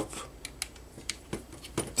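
A scatter of light, irregular clicks from a hex driver turning a tiny grub screw in a plastic RC-car lower suspension arm, nipping it up onto the flat of the pivot shaft so the pivot can't work out.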